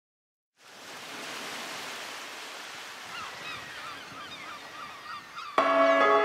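Recorded sea-surf ambience fades in after half a second of silence, with short repeated bird cries over it from about three seconds in. Near the end, music starts suddenly with sustained bell-like tones.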